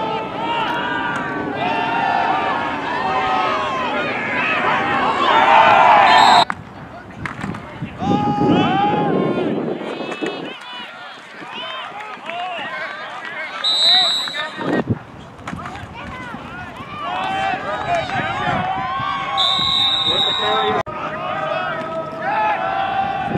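Many overlapping voices of players and spectators calling out at a football game. A referee's whistle blows briefly about fourteen seconds in and again, longer, near the end.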